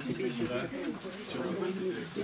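Indistinct chatter of several people talking at once in a small room, a low murmur of overlapping voices.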